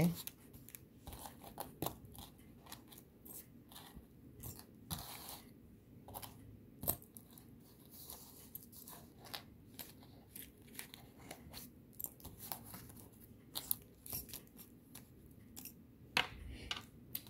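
Thin clear plastic bag crinkling and rustling in the fingers while small copper jewelry findings are shaken out of it. Light, irregular clicks and rustles are scattered throughout.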